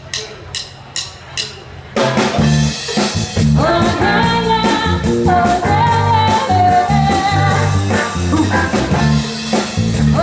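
A drummer's count-in of evenly spaced clicks, about two a second. At about two seconds a full live band comes in together: drum kit, bass, guitar, keyboards and horns. Voices join in singing about a second and a half later.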